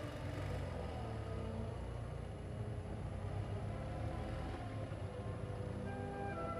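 BMW R65LS air-cooled flat-twin motorcycle engine running steadily at low speed.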